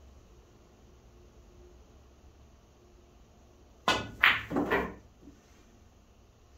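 A pool shot: the cue tip clicks against the cue ball about four seconds in, followed within a second by a louder clack of the cue ball hitting the object ball and the object ball dropping into a pocket. The seconds before the shot are quiet.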